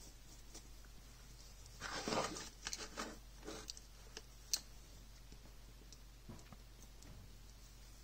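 Handling noise of the plastic Pentax Battery Pack LX being turned over on a cutting mat: a cluster of scrapes and knocks about two seconds in, then one sharp click a little later, over a low steady hum.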